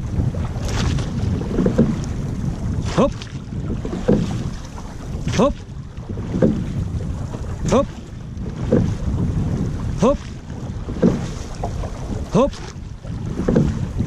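A crew rowing a wooden llaut in unison, with the oar strokes and water coming round about every two and a third seconds in a steady rhythm, paced by a shouted 'hop' on each stroke. Wind buffets the microphone throughout.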